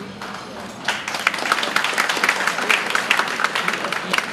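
Audience applause: many hands clapping, starting about a second in.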